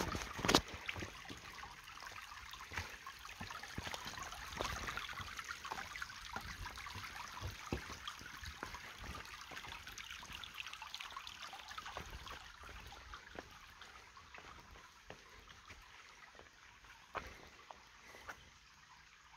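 A shallow forest stream trickling over stones, with scattered small knocks throughout and one sharp knock about half a second in. The water sound fades somewhat over the last few seconds.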